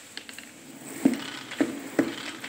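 Spin mop handle pushed down in strokes in the bucket's spinner basket, a sharp plastic clack with each stroke about half a second apart, starting about a second in: the mop head is being spun to wring it out after rinsing.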